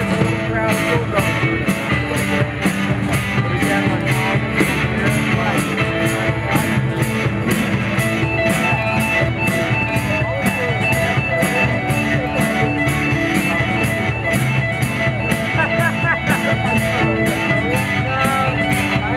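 Live rock band playing an oldies cover on electric guitars and drums, with a steady beat kept on the cymbals.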